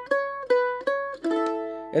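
Eight-string F-style mandolin picking single notes back and forth between two neighbouring notes on the A string, about three a second. About a second in, it strikes the top three strings of an A chord and lets it ring.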